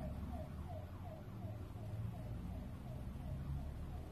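Plantain pieces frying in hot vegetable oil, a faint sizzle, over a low steady hum. A faint falling tone repeats about three times a second throughout.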